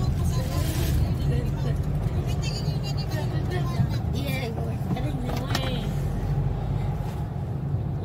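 Steady low road and engine rumble inside the cabin of a moving Nissan Navara pickup, with faint voices talking in the background.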